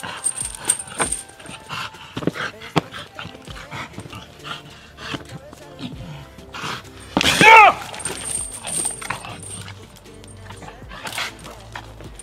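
An American bulldog scuffles and lunges on a chain leash, with the chain clinking and scraping in short clicks. One loud, short cry comes about seven and a half seconds in.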